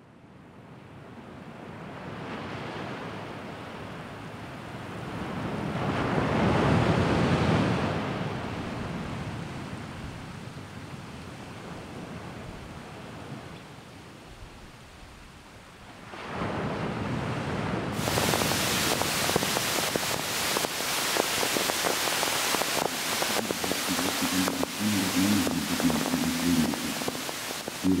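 Rushing, surf-like noise that swells and fades, then turns suddenly louder and crackling a little past halfway, with a low sustained musical tone coming in near the end.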